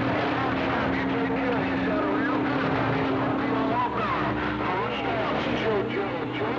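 CB radio receiving on channel 6: loud static with faint, garbled voices from several distant stations talking over each other, and a steady low heterodyne tone from colliding carriers that weakens a little past halfway.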